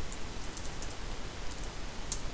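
Typing on a computer keyboard: a run of faint, irregular key clicks over a steady background hiss.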